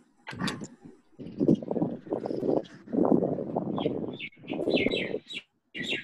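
Indistinct, garbled talk coming through a video call's audio, in bursts broken by short gaps, with no clear words.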